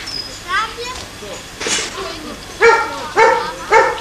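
A dog barking three times in quick succession, about half a second apart, in the second half, with people talking.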